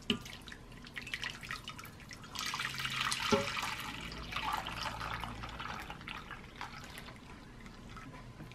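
Warm milk gelatin mixture being poured from an enamel mug into a glass baking dish: a soft splashing pour that swells about two seconds in and tapers off, with a few small clicks.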